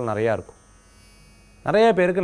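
A man speaking, breaking off for about a second before going on. In the gap a faint steady electrical hum and buzz can be heard.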